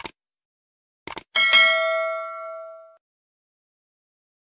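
A few short clicks, then a single bell-like ding about a second and a half in, which rings out and fades over about a second and a half.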